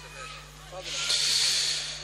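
A breathy hiss, like a deep breath drawn in close to the reciter's microphone, swelling up about a second in and lasting about a second, over a steady low hum from the sound system.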